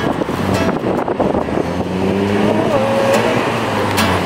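City street traffic: cars passing through an intersection. A steady engine hum sets in about halfway through.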